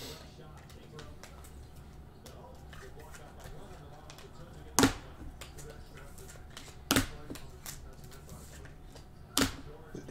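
Basketball trading card packs being opened and the cards handled: faint rustling and small clicks, with three sharp snaps or taps, about five seconds in, about seven seconds in, and just before the end.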